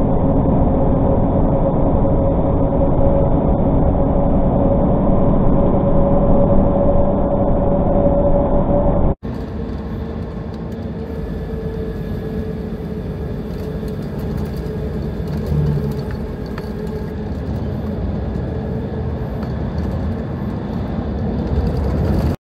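Steady engine and road drone inside a tractor-trailer's cab at highway speed, with a steady hum over it. About nine seconds in, the sound cuts abruptly to a different, quieter recording of steady vehicle and traffic noise.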